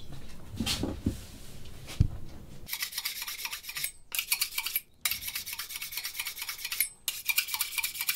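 A few knocks, then a kitchen knife's steel blade scraped rapidly against metal, as when a knife is sharpened. The bright scraping strokes come in quick runs with faint ringing, broken by short pauses.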